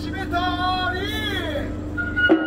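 Kagura hayashi music for a shishimai lion dance: a bamboo flute playing a phrase whose pitch bends down about a second in, over a steady low hum.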